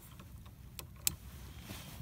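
Quiet handling of kayak gear, with two short sharp clicks a little after the middle, over a faint low background.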